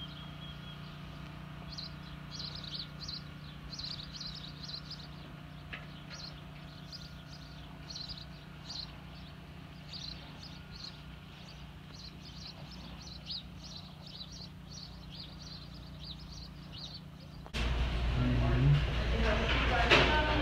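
Small birds chirping again and again over a steady low hum. Near the end it cuts abruptly to louder background music and voices.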